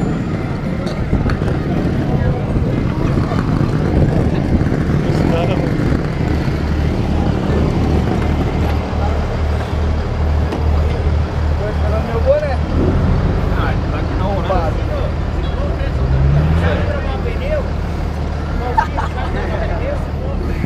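A vehicle engine running steadily in the background, its pitch rising briefly about three-quarters of the way through as it is revved, with people talking faintly.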